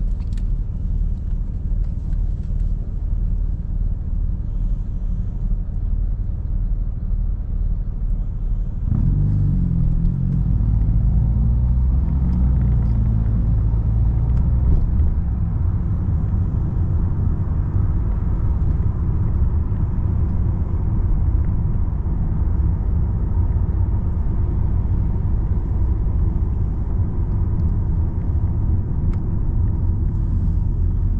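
Car driving, heard from inside the cabin: a steady low rumble of engine and road noise. About nine seconds in, the engine pitch rises as the car accelerates, and the rumble stays louder after that.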